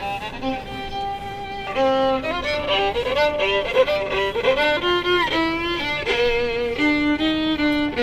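Solo violin played on the street: a slow melody of long, sustained notes, some with vibrato, getting louder about two seconds in.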